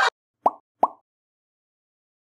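Two short rising 'bloop' pop sound effects in quick succession, about half a second apart, edited into otherwise silent audio.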